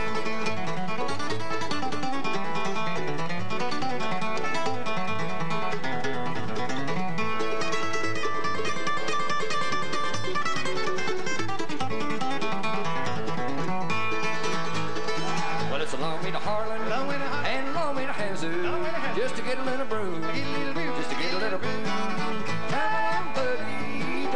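Live acoustic bluegrass band playing an instrumental break between verses, with flatpicked acoustic guitars, mandolin and upright bass and no singing. In the second half the lead line bends and slides in pitch.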